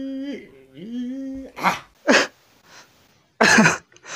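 A man's voice holds a long, steady drawn-out note, slides up into a second held note, then breaks into several short coughing bursts.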